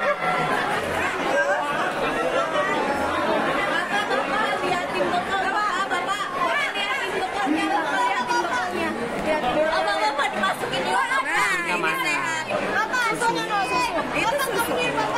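A group of teenage students chattering, many voices talking over one another at once so that no single voice stands out.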